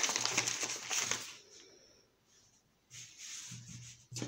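A paper flour bag crinkling as flour is shaken out over rolled phyllo dough, fading out after about a second. Near the end, faint soft rubbing as hands spread the flour over the dough.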